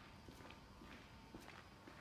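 Faint footsteps of a person walking steadily across a hard floor, about two steps a second.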